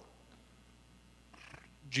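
A pause in a man's speech: faint room tone, then a short breath-like hiss about one and a half seconds in, just before his voice resumes at the very end.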